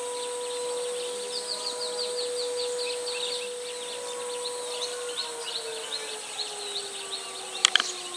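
Birds chirping in quick, repeated high calls over a steady siren-like tone that holds one pitch and then slowly slides lower from about five seconds in. A few sharp clicks near the end.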